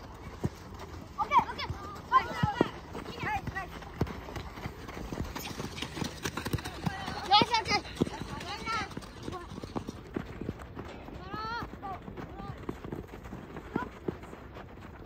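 High-pitched shouts and calls from young players at a soccer match, loudest about two seconds in and again past the middle, over scattered knocks of ball kicks and running feet on a gravel pitch.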